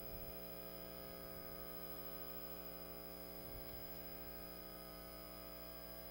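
Faint, steady electrical mains hum on the audio line: a set of unchanging tones with no other sound.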